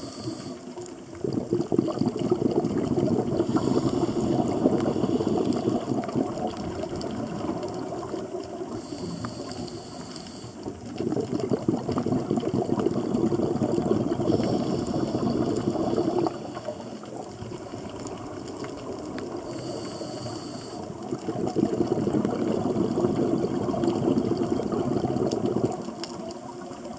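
Scuba diver breathing through a regulator underwater: a short hissing inhale about every ten seconds, each followed by several seconds of exhaled bubbles.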